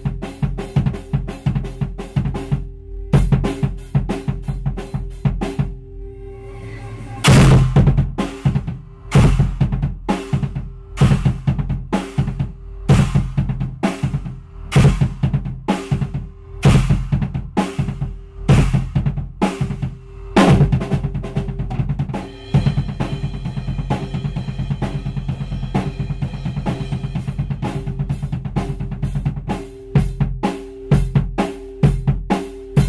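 Tama Imperialstar drum kit played hard and fast: a pillow-muffled bass drum with a low, solid punch under double-pedal kick strokes, snare and cymbals. A big cymbal-and-drum accent comes about seven seconds in after a short let-up, and near the end there is a fast, even run of bass-drum strokes.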